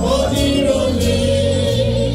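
A choir singing gospel music over a steady low bass accompaniment.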